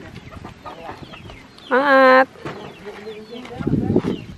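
A chicken gives one short, loud call, about half a second long, about two seconds in, over faint background voices.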